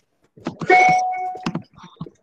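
A short electronic chime of two steady tones held for about a second, over low knocks, then a sharp click.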